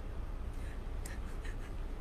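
A pause in speech: quiet room tone with a steady low hum and a few faint, soft rustles.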